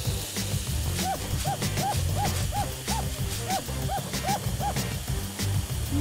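A run of about ten short hoot-like sound-effect tones, each rising and falling in pitch, a little under three a second, over background music with a steady low beat.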